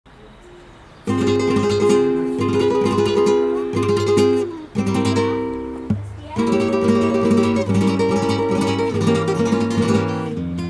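Background music: an acoustic guitar strumming chords, coming in about a second in, with brief breaks in the playing partway through.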